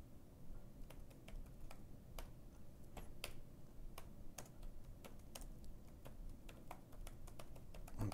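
Faint typing on a computer keyboard: irregular, separate keystrokes.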